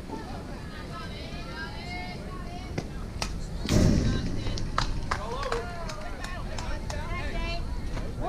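Softball players and spectators calling out and cheering, with a loud burst close to the microphone about four seconds in and a few sharp clicks around it.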